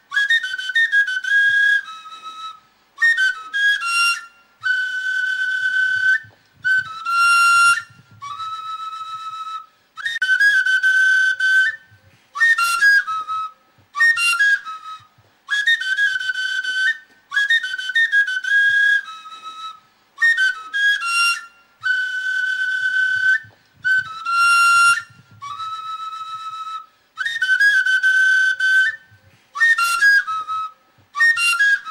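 Soundtrack music: a high, whistle-like flute melody in short phrases with brief gaps, the same pattern repeating about every ten seconds.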